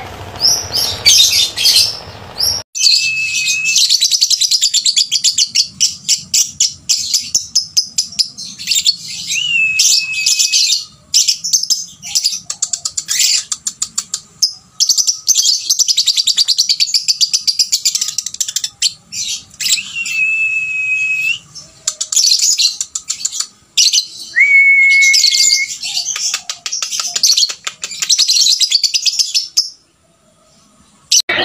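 Caged lovebird chattering in long, very rapid trilled runs of several seconds each, broken by short pauses, with a few held whistled notes. This is the sustained chatter bird-keepers call ngekek. A different cage bird's chirps with background noise are heard briefly at the very start.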